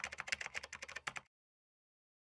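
Computer keyboard typing sound effect: a quick run of rapid keystrokes that stops about a second in.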